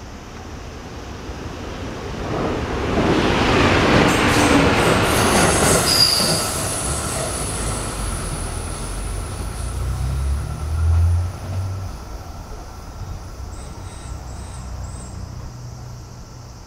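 JR electric commuter train passing on the Tokaido Main Line: wheel and rail noise is loudest about three to six seconds in, then a low motor hum swells around ten seconds and fades as the train moves away.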